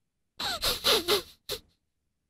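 A person laughing breathily: about four quick bursts over roughly a second, then one short huff.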